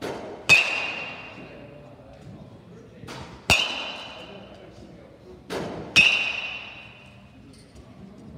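Metal baseball bat hitting balls during batting practice: three sharp pings about every two and a half seconds, each ringing briefly, with a fainter knock just before each one.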